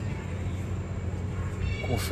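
A steady low rumble with a faint background hiss.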